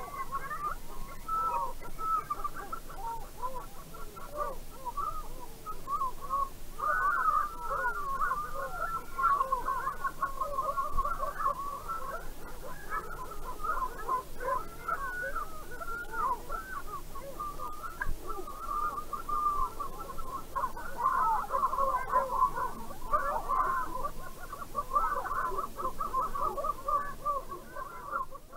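A flock of birds calling, many short calls overlapping continuously.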